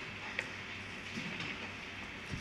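Quiet room tone with a faint steady hum, and a light click about half a second in as a Bible is handled and its pages turned.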